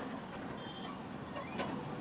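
Excavator running steadily as it digs, a low, even machine noise with a faint high whine at times.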